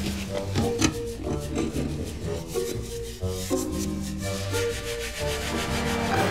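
A toilet bowl being scrubbed by hand with a cloth: repeated irregular rubbing strokes, with background music.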